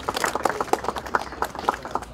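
A small crowd clapping, with the individual hand claps coming thick and irregular.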